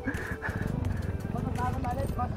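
Bajaj Pulsar NS 200's single-cylinder engine idling steadily, with faint voices in the background near the end.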